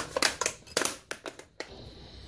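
Plastic housing of a Cube 3 PLA filament cartridge being pressed together and handled by hand: a quick run of plastic clicks and rattles that stops about one and a half seconds in.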